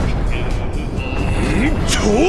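Fight-scene soundtrack: dramatic background music over a low rumble. A short rising grunt comes near the end, followed by a sharp hit.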